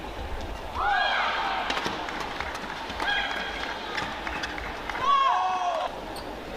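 Badminton rally: sharp cracks of racket on shuttlecock and court shoes squeaking on the synthetic court mat in short pitched chirps, about a second in, around three seconds in, and longest near the end.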